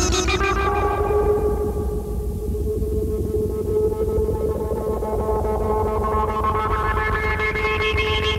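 Moog modular synthesizer music: a sustained drone tone with many overtones over a steady deep bass. Its upper overtones fade in the middle, then grow brighter again near the end.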